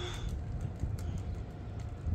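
Small toy figures being moved about in a shallow puddle: faint taps and little splashes of water, over a low steady rumble.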